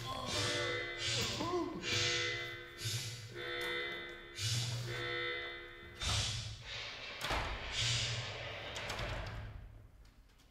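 Theatrical sound effect of an airlock blowing open: a pulsing alarm-like tone with a rush of air, about one pulse a second. Heavy thuds come around six and seven seconds in, and the sound fades out near the end.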